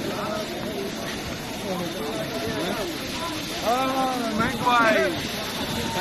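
People's voices: several people talking at once, with one voice louder and higher about four to five seconds in.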